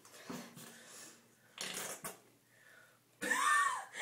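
Breathy, stifled laughter in short gasps, then a louder voiced laugh near the end.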